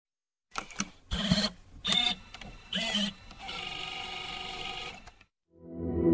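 Intro sound effects: a couple of clicks, then three short bursts of noise with tones about a second apart, then a steady whirring that stops about five seconds in. Just before the end, a musical swell begins with the logo animation.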